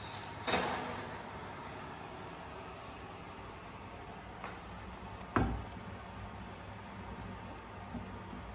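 A heavy enamelled cast-iron Dutch oven is scraped out across a metal oven rack about half a second in. It is set down with a single sharp knock about five seconds in, with a faint click just before.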